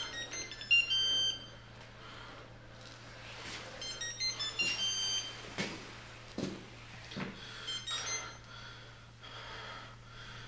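Cell phone ringtone, a short electronic melody of high beeping tones, sounding three times about four seconds apart, with a few soft thumps in between.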